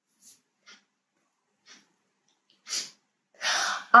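A woman's breathing: a few faint mouth clicks, a short breath about two and a half seconds in, then a longer audible breath just before she speaks again.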